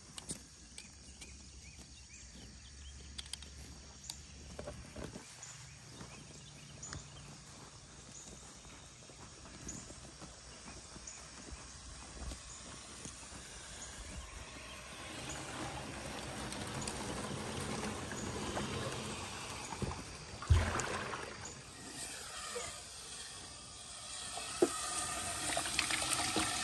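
Quiet open-air ambience with faint, evenly spaced high chirps, then a large plastic stock water tub being moved through grass, with a loud thump about two-thirds of the way through. Near the end, water starts splashing into the tub from its float valve.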